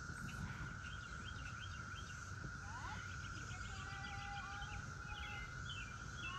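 Faint outdoor background of small birds chirping in short, repeated calls, busier in the second half, over a steady high hum and a low rumble.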